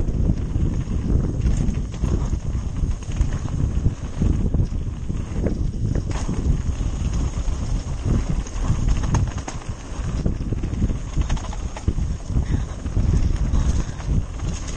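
Downhill mountain bike riding a rough dirt trail at speed: a constant rumble of tyres and wind, broken by frequent rattling knocks as the bike hits bumps.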